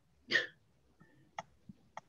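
A short, sharp breath-like vocal burst, followed by a few faint clicks of a computer mouse as the document is scrolled.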